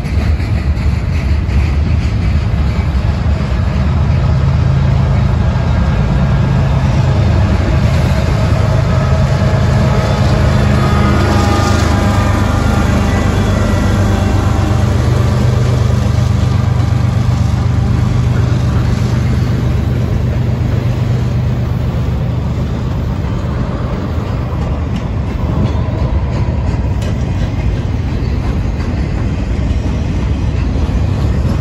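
Freight train rolling past: continuous rumble and clatter of cars on the rails. Through the middle the mid-train distributed-power locomotive, a GE ES44AH, goes by with its V12 diesel running as a steady low drone that fades again after it passes.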